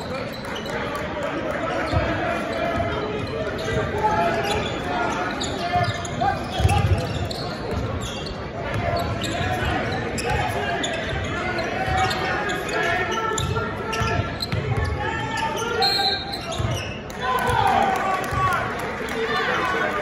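Basketball game in a gym: a ball bouncing on the hardwood court in scattered low thumps, under a steady mix of players' and spectators' voices echoing in the hall.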